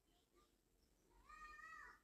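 Faint high-pitched animal call in a quiet room, about a second in and lasting under a second, its pitch rising and then falling.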